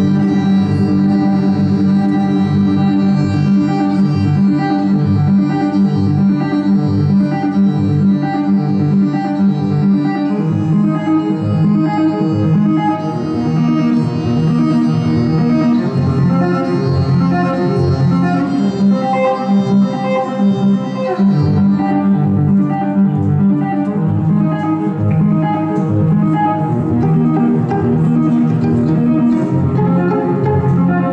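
Solo violin played live with a looping pedal: bowed phrases layered over a repeating low pulsing figure into a dense, sustained texture. The higher notes drop away about two thirds of the way through.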